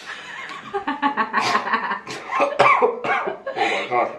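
A man coughing repeatedly, several harsh coughs in a row, from the burn of ghost-pepper spiced instant noodles he has just tasted.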